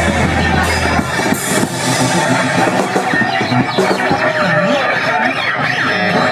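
A punk band playing loud and live: electric guitar, bass guitar and drums, with shouted vocals over them. The deepest bass drops out about a second in.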